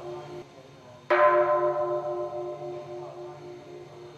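A temple bell struck once, about a second in, ringing with a slow wavering hum as it dies away. The fading tail of an earlier stroke fills the first second.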